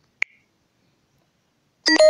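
A single short click a fraction of a second in, then quiet. Near the end a loud electronic phone tone starts, several steady pitches sounding together.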